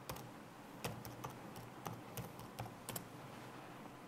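Faint typing on a computer keyboard: about ten separate, irregularly spaced keystrokes.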